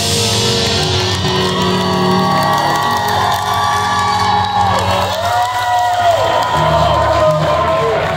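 Live rock band playing loudly, with the crowd whooping and shouting over the music.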